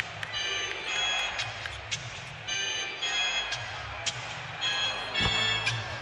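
Arena music with held high notes playing over crowd noise during a basketball game, broken by a few sharp knocks, with one heavier thump about five seconds in.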